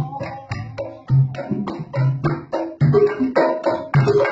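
Sundanese traditional bamboo ensemble music of the karinding style: a long bamboo instrument struck by hand, giving a running rhythm of deep, drum-like thumps with sharper clicks between them.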